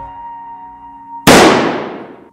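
Quiet held music notes, then about a second in a single handgun shot goes off, the loudest sound here, its echo dying away over about a second.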